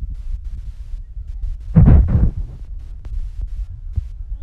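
Low, uneven rumble and thumping on a handheld phone's microphone, swelling loudest about two seconds in.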